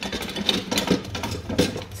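Dishes and cutlery knocking and clinking together in a sink during hand washing-up: a few sharp clinks over a steady low hum.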